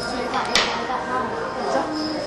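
Small scissors snipping through folded paper, with one sharp snip about half a second in.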